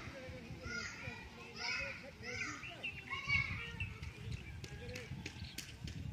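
Children's voices calling and chattering in high-pitched, rising and falling calls, with a few faint clicks near the end.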